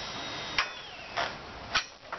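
The clip of a crop support bar being pushed onto the steel hoop of a sheep tunnel frame: three sharp clicks about half a second apart.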